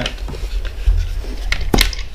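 Hands handling a clear plastic GoPro housing and a dome port, with small plastic knocks and then a couple of sharp clicks near the end as the housing snaps into place. A steady low hum runs underneath.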